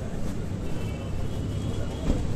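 Street ambience: a steady low rumble of traffic and machinery, with faint voices in the background.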